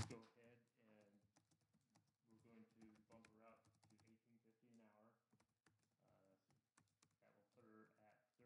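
Near silence, with faint scattered clicks of typing on a computer keyboard and faint, far-off voices.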